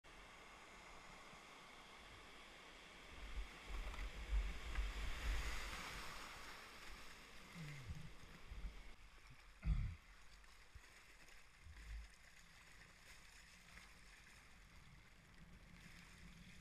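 River rapids splashing against a kayak as it runs a wave train: a steady wash of water that swells about three seconds in, with a dull thump about ten seconds in and a smaller one near twelve, then settles to a quieter rush.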